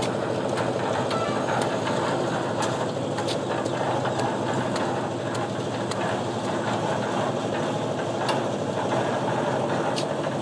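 Engine-driven concrete mixer running steadily, with a fast rattling churn and scattered light clicks.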